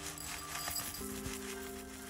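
Background music with held chords, over which dry rolled oats patter lightly as they are poured from a bag into a bowl.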